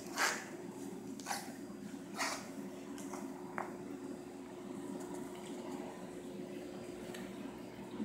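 Steady low hum of running aquarium equipment, with four brief rustling sounds in the first four seconds.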